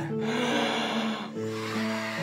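A man blowing hard by mouth into an inflatable camp bed, one long breath lasting about a second and a half, over background music.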